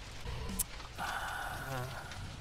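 A person's short, sharp breath about half a second in, followed by a brief voiced reaction sound, over quiet background music.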